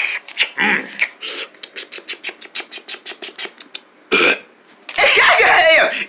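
A person making quick gulping clicks with the mouth, about seven a second for some three seconds, as if drinking water. A short sound follows about four seconds in, then one long, loud burp in the last second.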